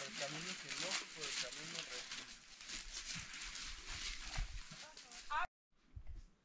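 Several people's footsteps crunching through dry oak leaf litter, with indistinct voices talking over them; the sound cuts off abruptly near the end.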